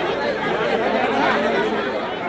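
Crowd chatter: many voices talking over one another at once, steady and fairly loud.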